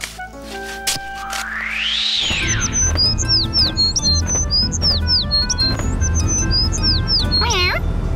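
A cartoon bird chirping in quick runs of short, high, falling tweets, ending in one longer falling call near the end, over background music and the low steady hum of a small van engine. Just before the chirping starts, a swoosh rises and falls in pitch.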